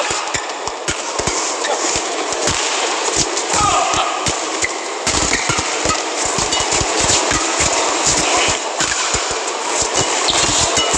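Badminton rally: rackets hitting the shuttlecock and shoes squeaking on the court over steady arena crowd noise. The sharp hits come thick and fast from about halfway through.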